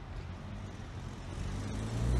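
Street traffic: a motor vehicle's engine running with a steady low hum that grows gradually louder toward the end, as if it is drawing closer.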